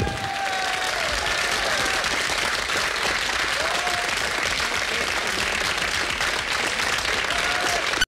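Audience applause, starting as the band's music stops and going on at a steady level, with a few brief higher calls over the clapping.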